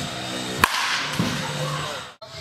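A baseball bat hitting a pitched ball: one sharp crack about two-thirds of a second in, over background music.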